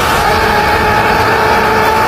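Anime power-up aura sound effect: a loud, steady roaring rumble with a sustained hum over it.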